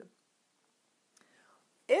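Near silence in a pause between sentences of a woman's speech, with a faint mouth click and a soft breath just after a second in; speech starts again just before the end.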